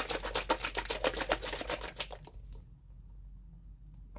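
A quick run of small hard clicks and clatters, about ten a second, that stops a little over two seconds in.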